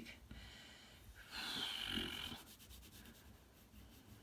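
A person breathes out audibly once, a sigh-like exhale lasting about a second. Near the end, a crayon scratches faintly on paper in short colouring strokes.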